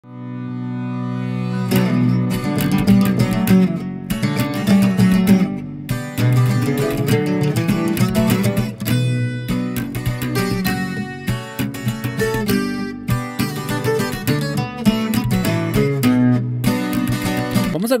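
Acoustic guitar playing a requinto lead line: plucked single notes and short melodic runs, opening on a sustained ringing tone for about the first second and a half.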